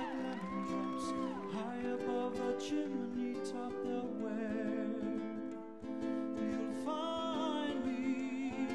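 Live band and singer performing a song for a rumba: sustained chords under a sung melody line, with a brief drop in level about six seconds in.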